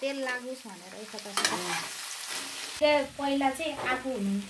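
A spatula stirring sliced green mango in a hot frying pan, the pieces frying lightly in oil, with a few sharp scrapes and clicks against the pan. Wavering voice-like tones sound over the stirring in the background.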